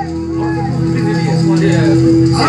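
Man's voice singing into a microphone over a held keyboard note and a steady low accompaniment.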